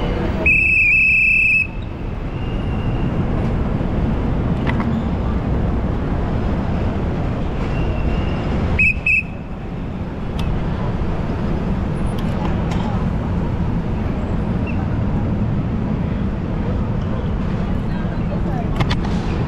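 Steady street traffic noise with a low rumble, cut by a loud shrill whistle blast about half a second in that lasts about a second, and a shorter double blast of the same whistle around nine seconds in.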